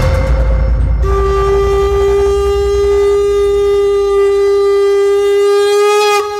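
A conch shell (shankha) blown in one long steady note that begins about a second in and holds to the end, sounded to mark the start of a puja, over a low rumble.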